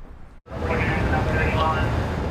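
Outdoor street noise: a steady low rumble of vehicle engines with faint, indistinct voices. It comes in after a brief dropout about half a second in.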